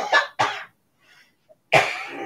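A man coughing: two short coughs in the first half second, then another hard cough near the end.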